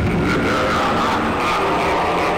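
A loud added sound effect: a dense rushing noise carrying a tone that slowly falls in pitch.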